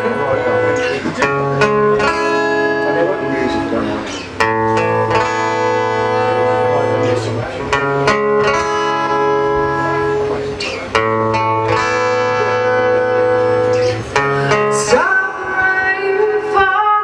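Acoustic guitar playing an instrumental passage of ringing chords that change every two to three seconds, heard live through the room. A woman's singing voice comes back in near the end.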